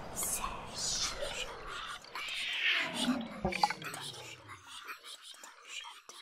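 Electroacoustic tape music: whispered voice sounds and hissing noise bursts, with several falling pitch glides in the middle and a few sharp clicks, the whole fading away toward the end.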